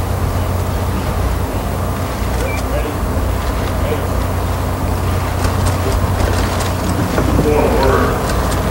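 Steady wind rumble buffeting an outdoor microphone, a deep continuous rumble with a hiss of open-air noise over it.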